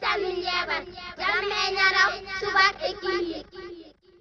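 A high-pitched, child-like voice singing in quick, broken phrases, stopping shortly before the end, over a faint steady low hum.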